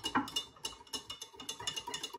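Metal spoon stirring a drink in a tall glass, clinking against the glass in a quick run of light ticks with a faint ring, stopping just after the end.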